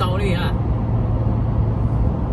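Steady low hum of a car driving at highway speed, its road and engine noise heard from inside the vehicle.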